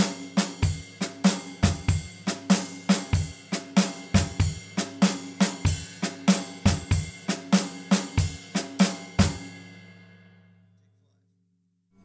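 Drum kit played in an eighth-note-triplet shuffle: a swung ride-cymbal pattern over snare strokes, with regular bass drum kicks. The playing stops about nine seconds in and the cymbals ring out and fade to silence.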